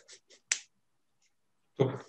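Short trailing fragments of a person's voice and one brief, sharp, hissy sound about half a second in, then about a second of dead silence, typical of a noise-gated online call, before a man starts speaking near the end.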